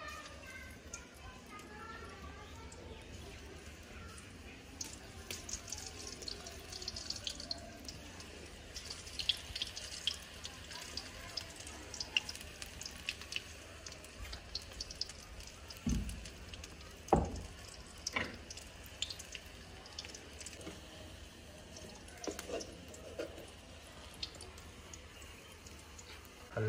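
Spinach pakora batter frying in hot cooking oil in a karahi: a steady crackling and spitting of small ticks as spoonfuls go into the oil. There are two louder knocks a little past halfway.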